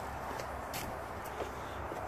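Quiet outdoor background with a steady low rumble and a couple of faint taps from footsteps on a paved driveway as the phone is carried.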